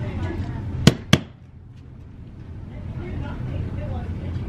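Two sharp clicks about a quarter second apart, about a second in, then a low steady hum.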